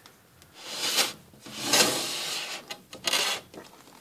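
Three bursts of rustling and scraping from a hand and a hedgehog moving in wood-shaving bedding, the longest lasting about a second in the middle.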